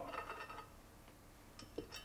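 Faint metallic clinks and handling noise from the stainless-steel front cover of a centrifugal pump being worked loose by hand. A faint metal ringing dies away in the first half second, and there is a small click near the end.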